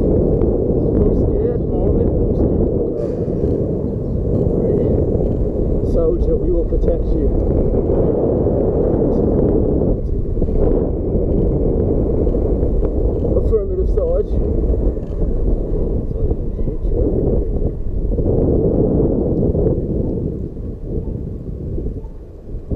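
Steady rushing wind buffeting the microphone of a camera on a moving e-bike, a dense low rumble that holds throughout.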